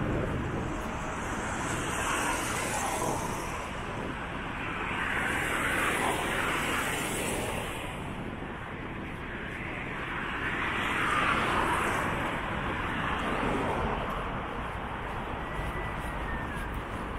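Street traffic: cars passing one after another on a wide city avenue, each rising and falling as a swell of tyre and engine noise, three or four times over a steady hum of distant traffic.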